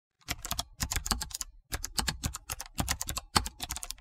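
Typing sound effect: rapid, irregular clicks of computer keyboard keys, with a short pause about one and a half seconds in.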